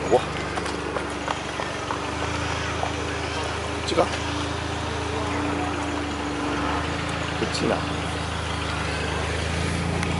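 Steady low hum of a car engine idling close by, under the indistinct voices of passing people and a few brief sharp sounds.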